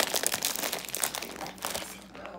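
Plastic instant-ramen packet crinkling in a dense, irregular run of crackles as hands grip and pull at it in a struggle to tear it open.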